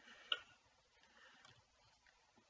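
A few faint computer keyboard clicks, the sharpest about a third of a second in.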